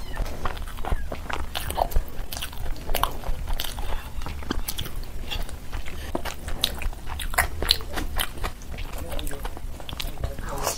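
Close-up eating sounds: a person chewing a mouthful of rice and curry and mixing rice with gravy by hand, giving many short wet clicks and smacks, over a steady low hum.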